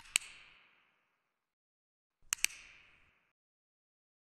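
Two sharp double clicks about two and a half seconds apart; each pair of clicks comes in quick succession and is followed by a short fading ring.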